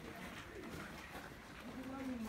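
A bird calling faintly, with faint voices in the background.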